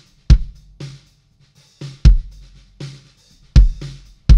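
Recorded drum kit playing back in a steady groove, the kick drum hits loudest and alternating with snare hits over cymbals. It is running through a Neve 1073-style preamp plugin with its mic preamp gain dialed in to drive the drums hotter.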